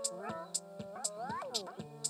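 Electronic music: synthesizer tones sliding up and down in pitch over a beat, with a short high tick about twice a second.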